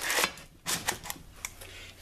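Lid of an enamelled Dutch oven being set down over parchment paper: a papery rustle, then a few light clicks as the lid settles into place.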